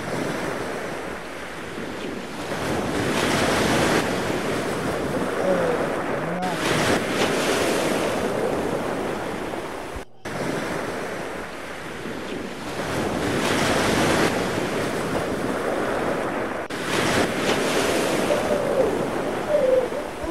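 Wind buffeting the microphone over rushing ocean surf and breaking waves, swelling and easing in surges. It cuts out suddenly for an instant about halfway through.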